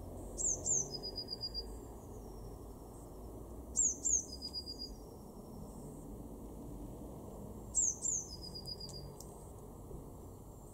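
Blue tit singing: three song phrases about every three and a half to four seconds, each two high, thin, descending notes followed by a lower, fast trill.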